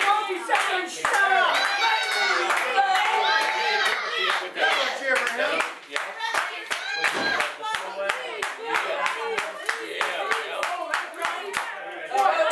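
Audience clapping in a steady rhythm, about three claps a second and strongest in the second half, over voices talking and calling out.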